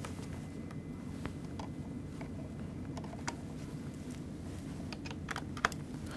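Scattered light clicks and taps of cables and plastic connectors being handled and plugged into a disc drive and laptop, with a quick cluster of louder clicks near the end, over a low steady room hum.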